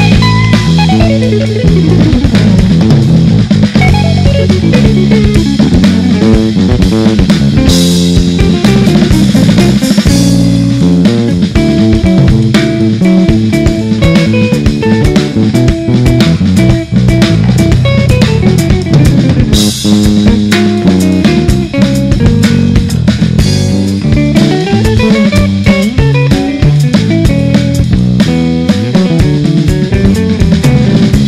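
Jazz guitar trio playing: a semi-hollow-body electric guitar runs fast single-note lines that sweep down and back up in pitch, over walking electric bass and a drum kit, with a few cymbal crashes.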